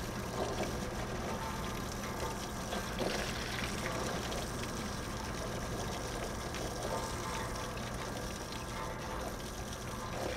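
Water from a garden hose spraying and splashing steadily onto an outdoor air-conditioning condenser unit to cool its compressor, which the technician thinks has overheated and shut off on its internal overload. A steady low hum runs underneath.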